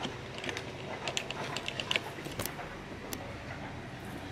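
A quick string of light clicks and small metallic rattles from handling at a front door, thinning out after about two and a half seconds.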